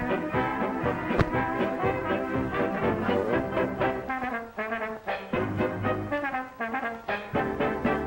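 Lively brass-led band music playing as the opening title score of an early-1930s sound cartoon. A single sharp click sounds about a second in.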